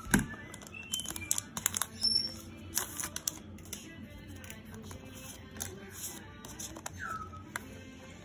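Foil booster-pack wrapper crinkling and clicking as cards are pulled out of it, busiest in the first few seconds. A quick run of short beeps climbs in pitch over the first two seconds, and a single short falling tone sounds near the end.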